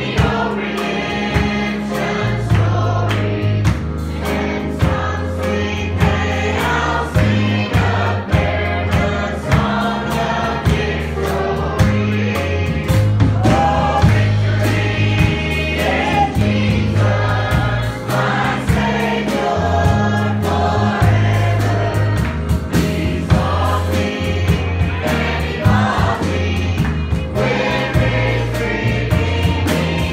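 A girl singing a gospel song with a band behind her: a drum kit keeping a steady beat under electric bass notes.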